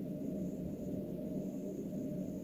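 Quiet room tone in a pause between spoken words: a steady low hum with no distinct events.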